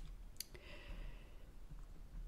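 A single short click about half a second in, over quiet room tone.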